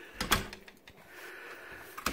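A wooden front door being shut: two quick sharp knocks of the door and its latch about a quarter second in, followed by quieter handling noise.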